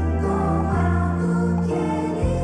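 A gospel song sung by a male vocal quartet in close harmony, with a bass line stepping from note to note about every half second.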